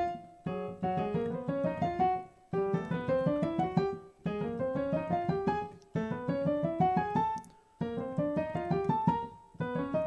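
Piano major scales played one after another, hands together. Each is a quick rising run of notes, with a short break before the next scale begins about every one and a half to two seconds.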